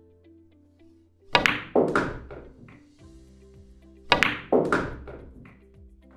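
Pool cue tip striking the cue ball, then the cue ball clacking into the object ball about half a second later, followed by a few fainter knocks. The same pair of clacks comes again about three seconds later, over steady background music.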